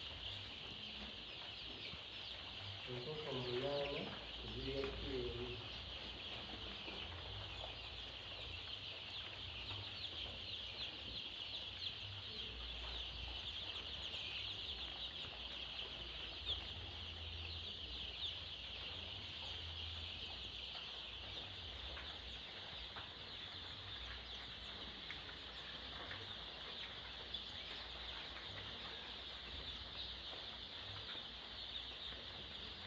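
Kienyeji chickens, a flock cheeping in a dense, continuous high chorus, with two louder, lower calls about three to five seconds in.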